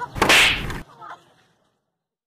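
A single loud swish, a little under a second long, that cuts off abruptly. The soundtrack then falls silent.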